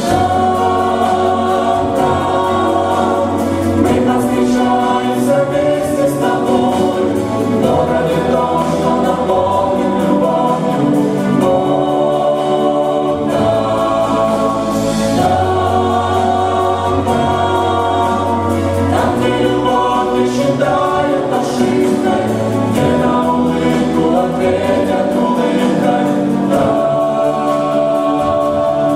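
A mixed vocal ensemble of men's and women's voices singing a Christian song in several-part harmony into microphones.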